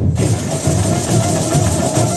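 Samba bateria playing: many snare drums (caixas) and other samba drums together in a dense, driving rhythm. The whole band comes in loudly at once right at the start.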